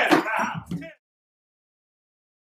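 Male voices singing a last wavering phrase into studio microphones, cut off abruptly about a second in; the rest is dead silence.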